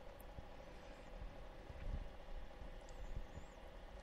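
Faint background noise of a recording with a steady low hum and a few soft clicks.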